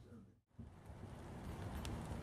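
Faint outdoor ambience: after a brief silence about half a second in, a low, even hiss with a few light ticks.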